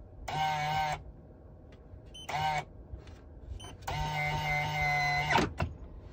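Electric motor whine in three separate stretches of steady pitch, the last and longest about a second and a half: the Toyota Sienna's electronic parking brake motors applying automatically as the van is shifted into park.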